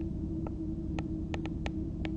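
Steady electrical hum with a low noise bed, broken by about half a dozen light, unevenly spaced clicks of a stylus tapping a tablet screen while handwriting.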